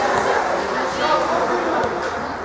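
Overlapping voices of spectators and young players shouting and chattering around a youth football pitch, with a few short high-pitched calls about a second in.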